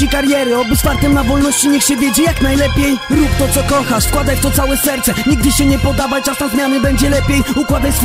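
Hip hop music: a beat with a deep, repeating bass and rapped vocals.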